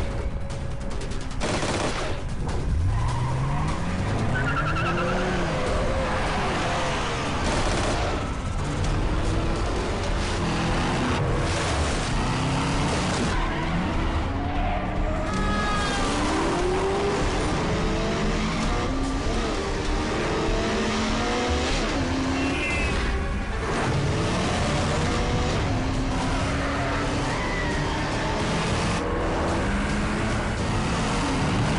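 Car-chase sound: car engines revving hard in repeated rising sweeps, with tyres squealing and skidding through turns. A few sharp bangs come in the first couple of seconds, and a dramatic music score runs underneath.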